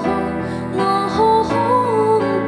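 A female vocalist singing a melody into a handheld microphone over an instrumental backing.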